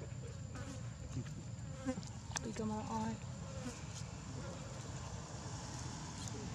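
Steady insect buzzing, like flies droning close by. A few short pitched calls come about halfway through.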